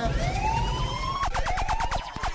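Dub siren sound effect from a DJ mix: a tone that rises for about a second, then breaks into a rapid run of falling zaps, about ten a second.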